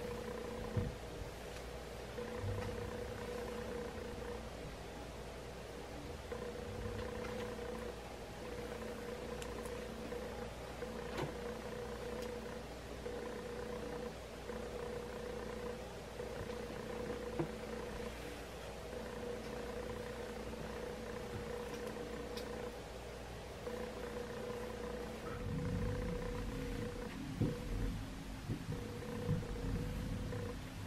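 A faint steady hum with a few brief dropouts, joined by soft low bumps and rustling in the last few seconds.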